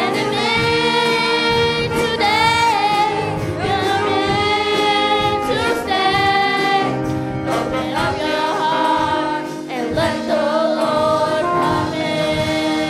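Youth choir of children and teenagers singing a gospel song into microphones, in phrases with held notes, over instrumental accompaniment.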